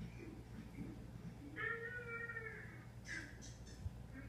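Yorkshire terrier puppy giving one high whine lasting about a second, followed by a short rustle and a soft knock near the end.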